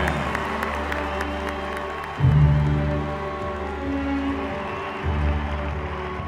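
Slow music of long held chords, a deep bass swell coming in about two seconds in and again near five seconds, over a crowd applauding.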